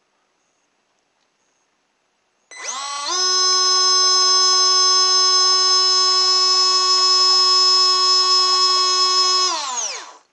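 Small DC water pump in a model water-jet boat running without a filter over its inlet: a loud, steady, high motor whine that spins up about two and a half seconds in and winds down near the end.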